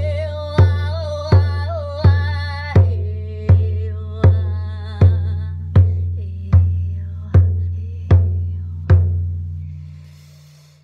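Elk-skin hand drum beaten with a padded beater in a steady slow beat, about four strikes every three seconds, each with a deep boom that rings on. A woman's wordless, wavering sung cry rides over the first few seconds, then settles to a lower held tone; the drumming stops about nine seconds in and the ringing dies away.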